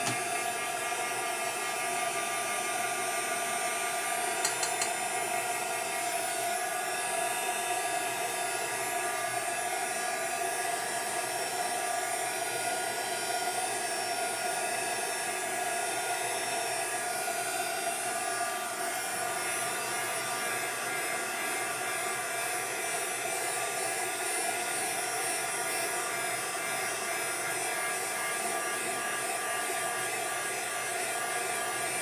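Handheld craft heat tool blowing steadily to dry wet watercolour paint: a rush of air with a constant motor whine. A few faint clicks come about four seconds in.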